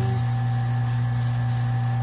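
Small wood lathe motor running with a steady hum as paste wax is buffed into the spinning shaker blank with a paper towel.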